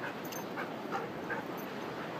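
Dogs playing, with four short high-pitched yelps over a steady hiss.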